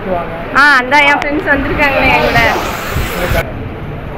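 People talking in a language the transcript does not render, including a high, swooping voice about half a second in.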